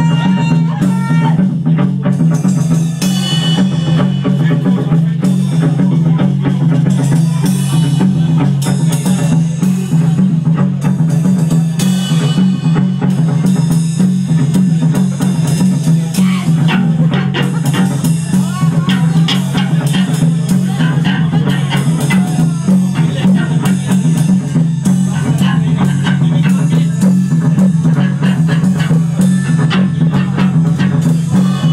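A punk-grunge band playing live and loud: electric guitars and a drum kit, with a heavy, boomy low end.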